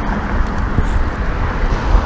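Riding noise from a bicycle moving along a city bike lane: steady wind rumble on the microphone mixed with car traffic on the road alongside.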